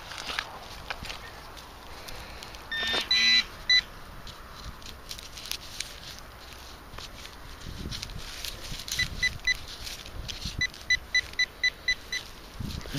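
Handheld metal-detecting pinpointer beeping as it is worked in a dug hole: a short tone a few seconds in, three short beeps later on, then a fast run of beeps near the end as it closes on the metal target. Faint crunches of soil come between.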